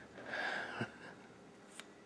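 A faint short breath out through the nose, lasting under a second, followed by a small click of handling near the end.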